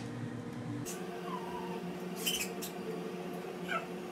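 Small plastic clicks from Lego pieces being twisted and snapped in the hands, a few sharp ones about a second and two seconds in, with a couple of short high squeaks, the louder one near the end, over a steady background hum.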